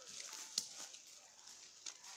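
Rustling and crunching in dry grass and bracken, with two sharp snaps, one about half a second in and one near the end.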